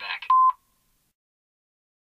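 A brief electronic beep, one steady tone held for about a fifth of a second, coming just after the last of the soundtrack fades; then the sound cuts off to silence.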